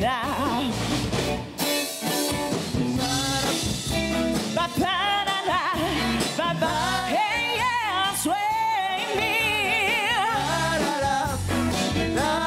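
A woman sings a song in English live into a handheld microphone, backed by a band of keyboard, drums and electric guitar. Her held notes waver in a wide vibrato through the second half.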